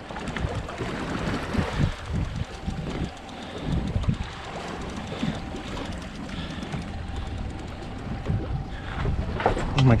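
Wind buffeting the microphone over water sloshing against a small boat's hull, uneven and gusty.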